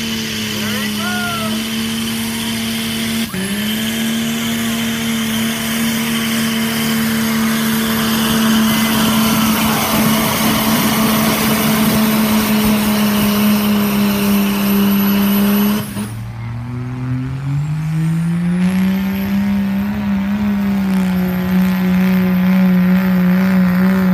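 Turbocharged Cummins diesel engine of a Dodge Ram pickup running at high revs under load as it drags a pulling sled, with a high turbo whistle over the engine note. The pitch dips briefly about three seconds in and then recovers. Near the end another diesel Dodge pickup's engine climbs from low revs to a high, steady pitch over a few seconds as its turbo whistle rises.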